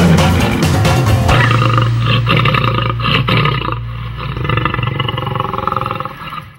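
The backing music of a children's song with an animal roar sound effect over it.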